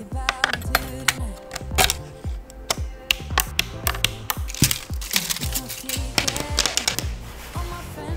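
A pop song with a steady beat plays over a dense run of sharp clicks and taps from hardware being handled: an AMD Threadripper PRO processor in its orange plastic carrier being seated in its motherboard socket.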